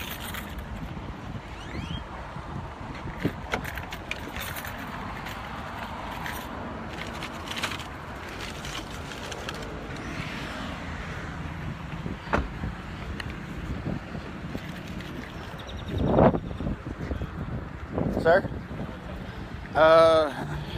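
Steady noise of passing street traffic, with scattered knocks and rustles from the phone being handled and carried. A brief voice sounds near the end.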